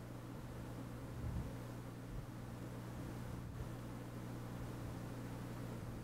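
Faint steady low hum with a light hiss, and no distinct events: background room tone.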